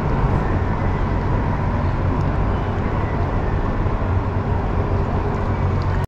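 Steady low background rumble with a faint hum, even throughout with no distinct events.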